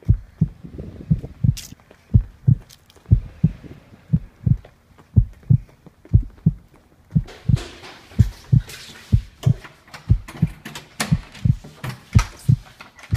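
A heartbeat sound effect: low double thumps, lub-dub, about once a second, running steadily as a suspense cue. From about seven seconds in, rustling and sharp clicks sound over it.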